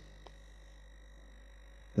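Quiet room tone: a steady low electrical hum with faint, steady high-pitched tones, and one tiny click about a quarter of a second in.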